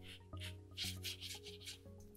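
Watercolour brush bristles rubbing across textured watercolour paper in about five short strokes, over soft background music.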